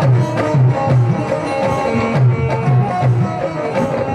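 Instrumental break in a live bhajan: a dholak drum keeping a steady beat, about two to three low strokes a second, under a held keyboard melody.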